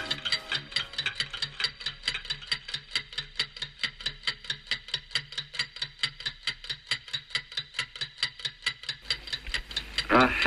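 A clock ticking steadily, with quick, even ticks several times a second.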